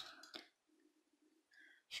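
Near silence: room tone, with a faint click in the first half second.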